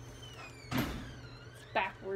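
Brief wordless vocal sounds from a person: high tones that glide down in pitch, a short breathy burst, then a short voiced sound near the end.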